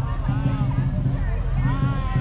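Low engine rumble of a classic Chevrolet Corvette convertible's V8 as it rolls past slowly, under the chatter of voices.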